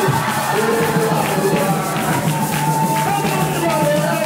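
A church congregation singing a lively worship song together, with hand clapping keeping a steady beat.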